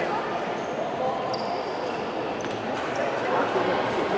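Background chatter of many voices in a large sports hall, with a few faint short squeaks and taps.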